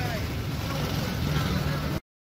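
Outdoor street ambience: a steady low rumble of traffic with a haze of distant voices, cutting off abruptly at the end.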